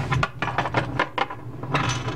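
Small plastic Littlest Pet Shop toy figures clicking and tapping against a tabletop as they are handled and moved, a quick run of light knocks, about four or five a second.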